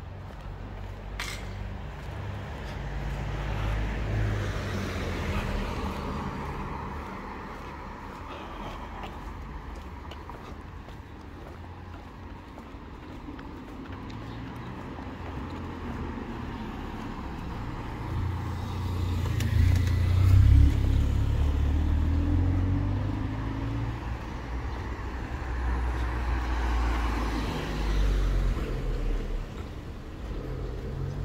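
Road traffic: motor vehicles passing one after another, their engine and tyre noise swelling and fading about three times, loudest about two-thirds of the way through.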